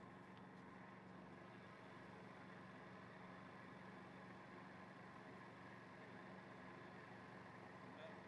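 Near silence: a faint, steady low hum of outdoor background.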